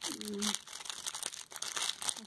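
Clear plastic wrapping crinkling in irregular rustles as it is handled around a small bottle.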